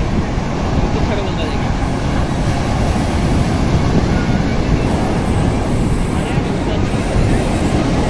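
A steady loud rush of waves breaking on the beach, with the voices of people in the crowd over it.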